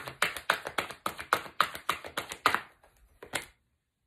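Hand-shuffling of a deck of love cards: a quick run of card taps, about seven or eight a second, stopping about two and a half seconds in. Two last taps follow just after three seconds.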